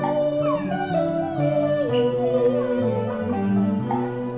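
Cantonese opera (粵曲) accompaniment ensemble playing a melodic passage, a lead line with sliding notes and vibrato over lower sustained parts.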